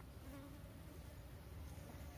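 Faint buzzing of flies around a fresh boar carcass, over a low steady rumble.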